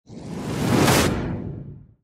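Whoosh sound effect for a logo intro, swelling to a peak about a second in and then fading away.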